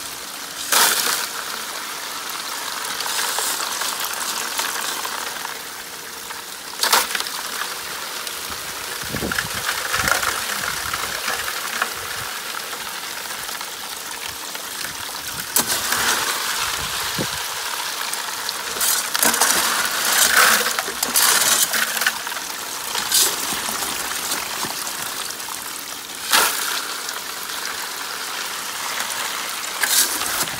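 Pumped water gushing steadily over gravel in a homemade five-gallon-bucket highbanker's plastic classifier screen. Now and then stones clatter against the plastic, with a cluster of clatters about two-thirds of the way through.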